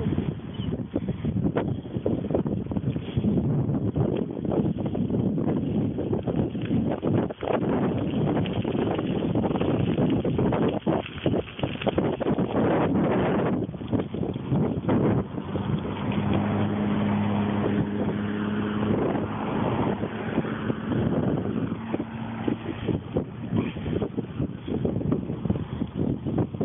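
Wind buffeting the microphone of a camera carried on a moving bicycle, with road noise. A steady low hum joins in for several seconds past the middle.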